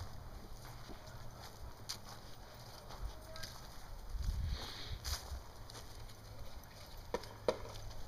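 Faint rustling and scattered footfalls of dogs running over dry, frost-covered leaf litter, over a low rumble, with a few sharper ticks near the end.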